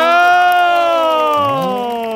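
Several voices holding a long whooping call together, one pitch rising a little and then slowly falling over about two seconds.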